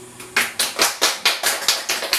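The last ukulele chord fades out, then hand clapping starts about a third of a second in: a steady run of about five claps a second, applause at the end of the song.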